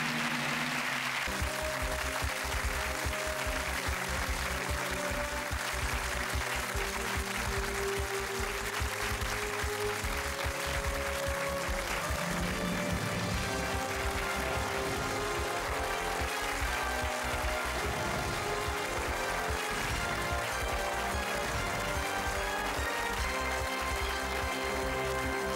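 Studio audience applause for about the first second, then the game show's end-credits theme music plays steadily, with sustained notes and a low beat.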